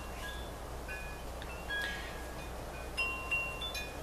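Wind chimes ringing, scattered single notes at several pitches, over a low steady hum.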